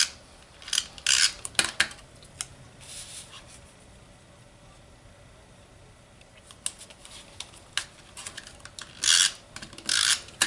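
Paper pieces being handled and rubbed down onto cardstock by hand, giving short papery scraping rustles. There are several in the first two seconds and again near the end, with a quiet stretch in between.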